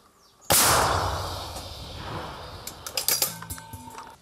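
A towed artillery gun firing a single shot about half a second in: a sudden loud boom that dies away over the next three seconds, with a few sharp clicks near the end.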